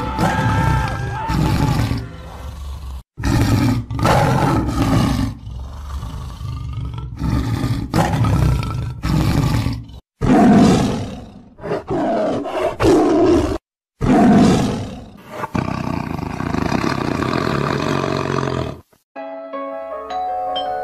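A big cat roaring and snarling in a run of short segments that start and stop abruptly, laid over music.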